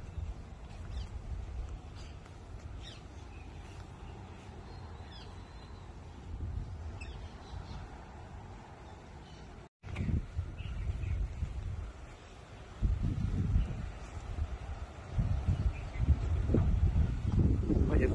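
Outdoor ambience: birds calling with short chirps over a low rumble on the microphone. The sound drops out briefly about halfway, and heavier low rumbling noise fills the second half.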